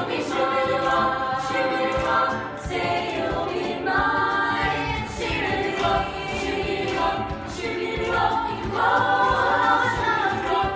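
A group of girls singing together as a choir, over a steady beat.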